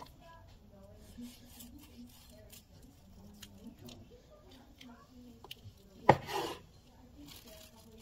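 Chef's knife slicing through a seitan roast on a wooden cutting board: soft sawing strokes and light taps of the blade, with one louder half-second scrape about six seconds in.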